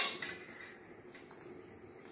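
A steel spoon clinks sharply once against a plate, ringing briefly, followed by faint small clicks of handling.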